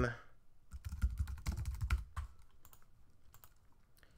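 Typing on a computer keyboard: a quick run of keystrokes about a second in, then a few fainter clicks.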